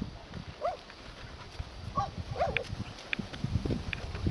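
Dog giving a few short, high yelps, about three in all, spaced out over the few seconds.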